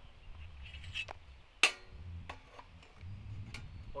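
Sheet-metal parts of a flat-pack portable gas grill clicking and clinking as the gas line is fitted into it: a few light ticks and one sharp metallic click about one and a half seconds in.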